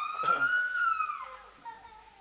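A person screaming: one long, high-pitched cry that rises and then falls away over about a second, followed by fainter, lower wailing cries.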